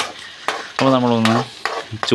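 A metal spoon stirring and scraping sardine roe frying in masala in a metal pan, with a light sizzle and a few sharp scrapes. A voice speaks briefly about a second in.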